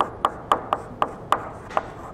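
Chalk writing on a blackboard: a run of about seven sharp taps and short scratches at uneven spacing as the letters are stroked out.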